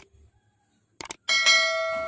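Click sound effects followed by a ringing bell chime, the audio of an animated subscribe-button-and-notification-bell overlay: a short click at the start, two quick clicks about a second in, then a steady bright ding that rings on to the end.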